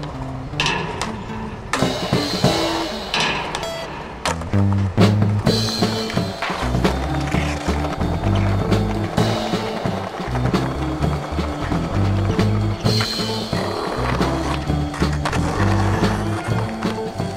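Skateboard sounds, the board knocking on concrete several times and the wheels rolling on pavement, heard over a music soundtrack with a steady bass line.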